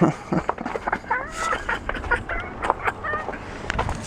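A person laughing in short, high-pitched bursts, with several sharp knocks and snaps in between.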